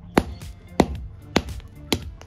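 Claw hammer striking a cube of PVA-glue ice on concrete paving stones: four sharp blows, a little over half a second apart.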